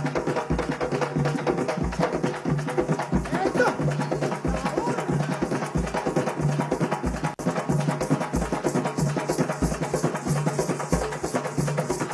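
Afro-Venezuelan San Juan drums played live: a tall drum and other percussion in a fast, dense rhythm, with a deep drum stroke repeating a little more than once a second.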